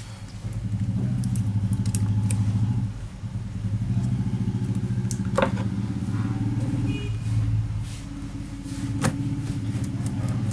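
A low, engine-like drone that swells and dips, with a few light clicks over it.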